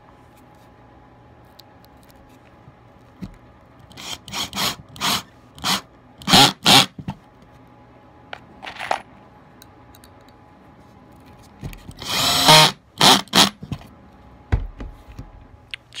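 Ridgid 18 V cordless drill run in a series of short trigger bursts, driving Kreg screws into pocket holes in pine skirting. The bursts come in a cluster early on and again later, with one longer run of about half a second about three-quarters of the way through.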